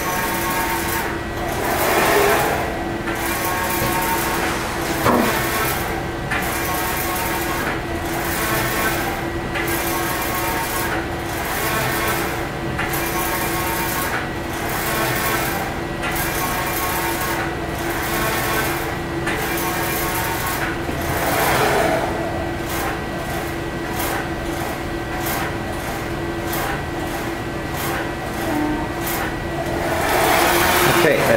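EXILE Spyder II direct-to-screen inkjet printer printing a screen in unidirectional mode. The print-head carriage shuttles across the gantry over a steady motor hum, in a regular rhythm of roughly one pass a second that quickens in the last several seconds.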